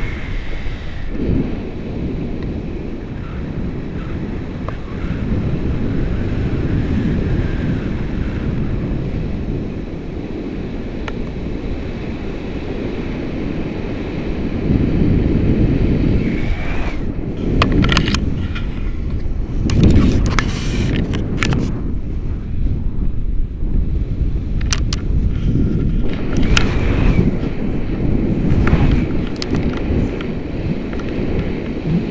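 Wind from the paraglider's airspeed buffeting a camera microphone: a loud, low rumble that turns gustier about halfway through, with scattered sharp clicks and rustles in the second half.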